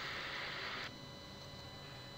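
Faint, steady hiss of the recording's background noise with a faint steady whine; the hiss drops a little about a second in.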